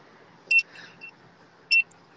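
Two short, high electronic beeps, one about half a second in and another just before the end, with faint lesser blips between them.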